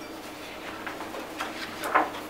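A few short, soft rustles from a sheet of calligraphy paper being handled and lifted, the loudest just before the end, over a faint steady room hum.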